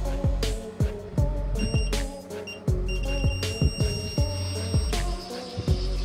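A round piezo alarm buzzer being tested gives a steady high-pitched beep in short spells: briefly about one and a half seconds in, a blip a moment later, then for about two seconds from the three-second mark, showing that it works. Background music with a steady beat plays throughout.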